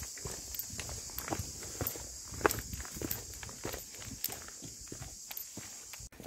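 Footsteps on a dry dirt and stony trail: irregular crunching steps, a few a second, over a steady high insect hiss.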